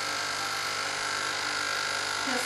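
Capsule coffee machine's pump running with a steady hum as the coffee comes out, after the brew button has been pressed again.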